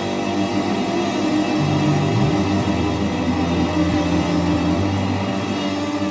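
Live rock song intro: electric guitar and bass guitar playing through amplifiers, with no drums yet. A note slides up about two seconds in.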